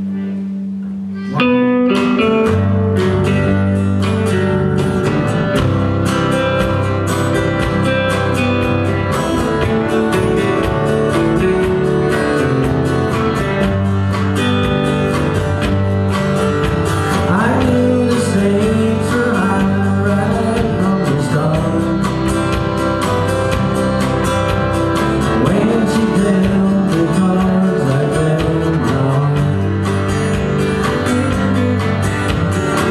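Live country band with accordion, acoustic guitars and drum kit. A held low note fades for about a second and a half, then the full band kicks in with a steady up-tempo tune.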